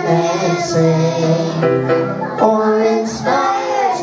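A child singing a song through a microphone, holding several long notes.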